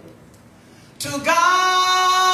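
A woman singing into a microphone over a church PA: after a quieter first second, she breaks into one loud, long held note about a second in.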